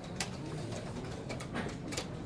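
Blitz chess play in a busy tournament hall: one sharp click of a move on a wooden board or a clock being pressed shortly after the start, then fainter clicks near the end, over a steady low murmur of the room.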